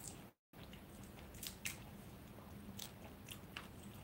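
Faint, crisp clicks and crackles of cooked shrimp shell being peeled apart by hand, a handful of separate snaps in the second half. The sound cuts out completely for a moment near the start.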